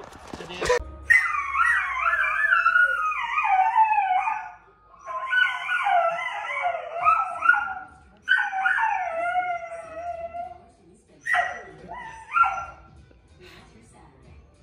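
Dog howling and whining in four long, wavering calls that slide up and down in pitch, with short pauses between them.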